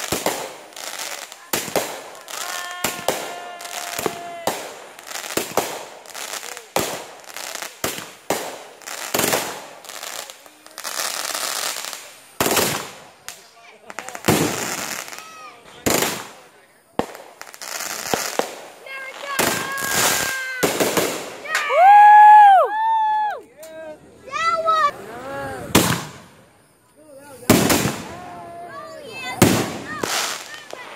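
Consumer fireworks going off in a fast string of sharp bangs and cracks, several a second, with rockets streaking up and bursting overhead and short stretches of hissing and crackling between the reports.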